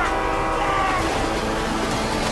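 Action-film trailer sound mix: a loud, sustained horn-like chord of several tones over a steady low rumble, with a few tones sliding downward in the first second.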